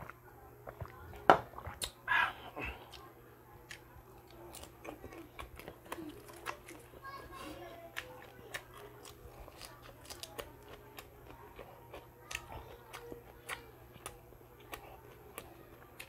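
Close-miked eating sounds: a loud sip of soup from a bowl about a second in, then wet chewing and crunching of crispy shrimp fritter and fresh lettuce, with many small mouth clicks.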